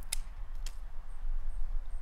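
Two crisp snips about half a second apart: pruning secateurs cutting through a dry Phragmites reed stem.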